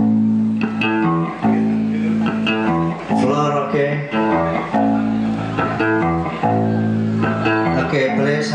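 Electric guitar being sound-checked through the stage PA, playing a run of melodic notes over long held bass notes.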